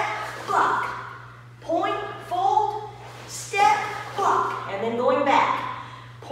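Speech: a woman calling short commands at a steady pace, about one every second, the count for stepping karate blocks.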